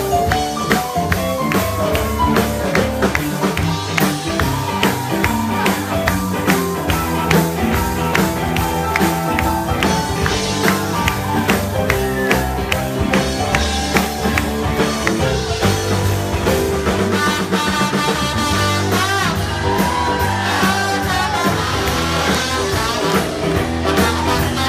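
Live band playing loud up-tempo music with a steady drum beat, guitar and trombones.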